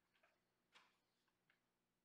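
Near silence: room tone with three faint, short clicks.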